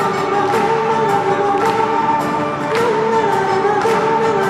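Live band music: held, wavering sung vocals over a steady beat, with a hit about every half second.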